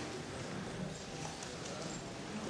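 Hearing-room ambience: faint, indistinct chatter with scattered light knocks and clicks.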